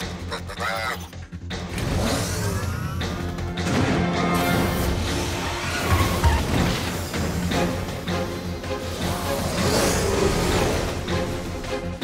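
Upbeat cartoon action music with a steady beat, overlaid with whooshing and vehicle-like sound effects as the characters dash off and their cartoon vehicles get ready to launch.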